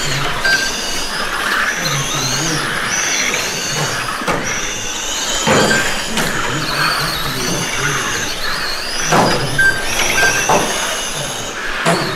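Several Schumacher Atom 3 GT12 and similar 1/12-scale electric pan cars racing on carpet. Their motors give a high whine that rises and falls in pitch as they accelerate and brake, overlapping, with a few sharp knocks along the way.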